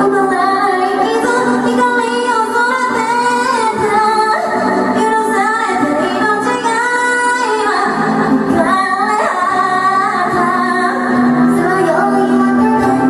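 A woman singing a pop-style song into a handheld microphone over a loud, continuous backing track, as at karaoke.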